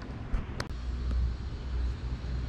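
Low outdoor rumble, like wind and handling on the microphone, with one sharp click a little over half a second in.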